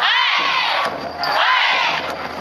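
A group of festival procession marchers shouting a chant in unison: two loud, high-pitched calls about a second apart.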